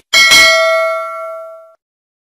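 Bell ding sound effect for a notification bell, struck twice in quick succession just after the start, then ringing out and fading away within about a second and a half.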